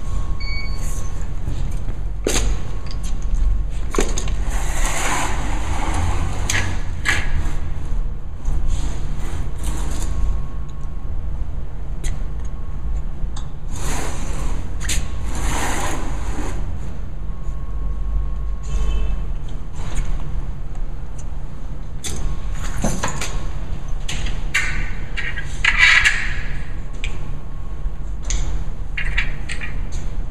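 Steady low rumble with intermittent scraping and knocking noises every few seconds as a ground-penetrating radar cart is rolled and handled on a concrete slab.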